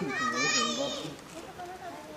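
Crowd of onlookers talking, with a child's high-pitched call in the first second rising above the chatter.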